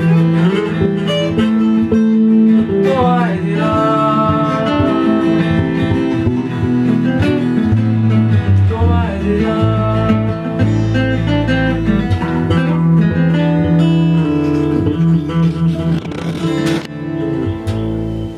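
Two acoustic guitars and an electric bass guitar playing a song together live. The playing grows quieter near the end.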